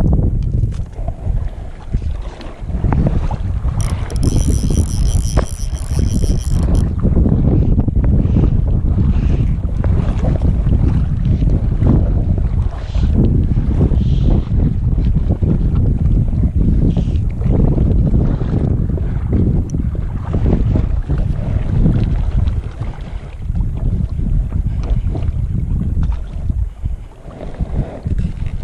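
Wind buffeting an action camera's microphone: a loud, gusting low rumble that swells and dips. About four seconds in, a high whirring sound lasts about three seconds.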